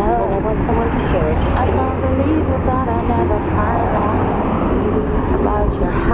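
A singer's voice from a song, with long wavering held notes, over a steady low rumble.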